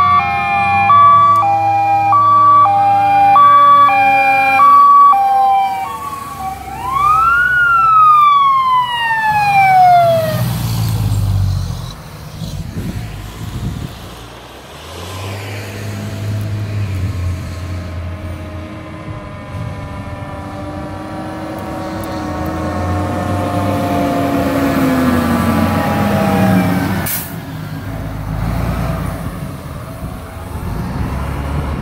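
Fire apparatus sirens. An electronic hi-lo siren alternates between two tones while a wail rises and falls over it for the first six seconds. Then a siren sweeps up and falls away about ten seconds in. After that a fire truck's engine runs as the truck approaches and passes, with a siren pitch winding down near the end.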